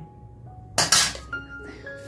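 Background music of single sustained notes, with a sharp double clatter of stainless steel plates being set down just under a second in.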